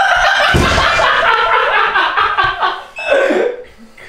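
A young man laughing loudly and at length, the laugh easing off about three seconds in after a last short burst.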